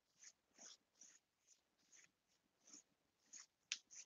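Near silence with faint, irregular brushing strokes of a dry paintbrush dusting a sheer glaze of paint over painted wood, and a small click near the end.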